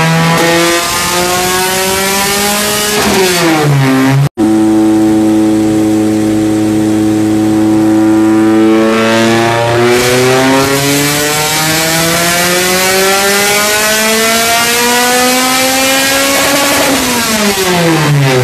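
Supercharged Honda K20 inline-four in an EG Civic hatch making pulls on a chassis dyno. The revs climb for about three seconds and fall away; after a momentary break the engine holds a steady speed for a few seconds, then climbs in one long pull for about seven seconds before dropping off sharply near the end.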